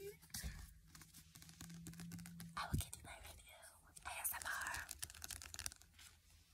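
Handling noise from a book being moved close to a phone's microphone: scattered clicks and rustles, a single knock a little under three seconds in, and a short rustle about four seconds in.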